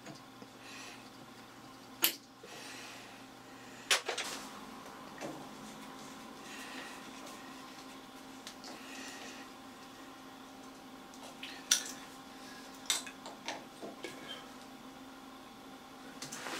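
Small metal clicks and clinks of a hex key and steel handle parts being handled while the slide's dial and handle are refitted on the lathe, with sharp clicks about two and four seconds in and a cluster near the end, over a faint steady hum.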